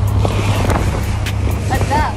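Boat engine running with a steady low drone under a loud rush of wind and sea spray splashing over the side of the boat. A voice starts near the end.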